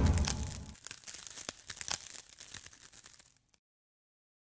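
Logo intro sound effect: a deep booming swell fades out, followed by scattered crackling, sparkling clicks that die away about three and a half seconds in, then dead silence.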